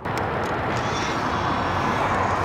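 A steady rushing noise with no distinct strokes or events.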